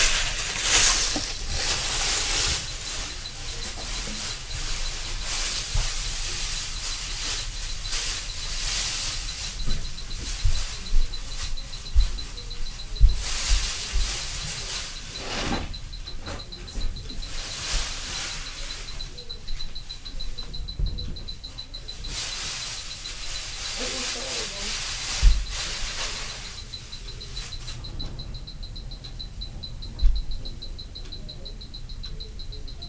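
Several dull, low thuds, a cluster between about 10 and 16 seconds in and the sharpest about 25 seconds in, over a constant hiss. The uploader takes such thuds for a neighbour stomping and dropping things on the floor.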